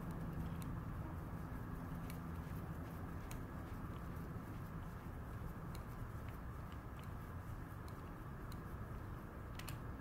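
Low steady background hum with a few faint, scattered light clicks of a small flathead screwdriver working a motorcycle's clutch adjuster.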